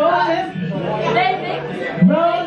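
Speech only: a woman talking into a microphone, with other people chattering.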